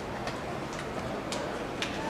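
Sharp hand claps, about two a second, over the steady open-air hum of a stadium.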